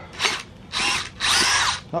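Cordless DeWalt drill boring drainage holes through the rubber sole of a child's shoe, run in three bursts: a short one, then two longer ones of about half a second each.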